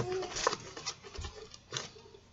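Trading cards being flipped through by hand in a cardboard card box: a few soft, irregular ticks and rustles of card edges.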